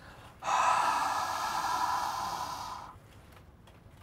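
A man breathing out hard through his open mouth, one long breath of about two seconds that fades at the end, so his breath can be smelled.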